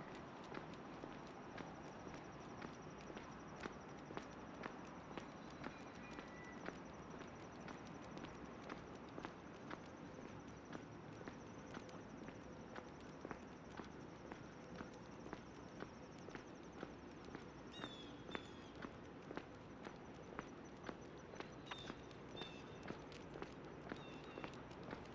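Footsteps on an asphalt path at an even walking pace, about one and a half steps a second, over a faint steady hiss of distant road traffic.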